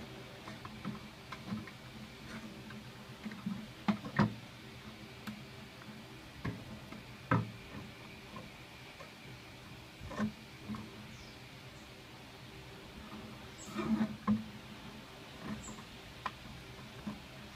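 Steel wire being bent and twisted by hand into a hook on a clear plastic jar, giving scattered, irregular clicks and taps of wire against plastic.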